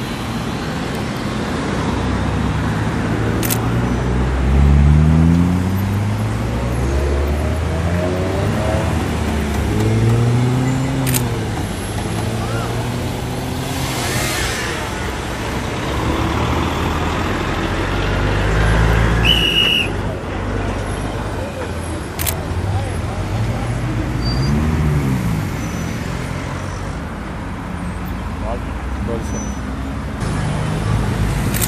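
Road traffic passing close by on a highway: vehicle engines rising and falling in pitch as they go past, several times over, with a few sharp clicks and a short high beep a little past the middle.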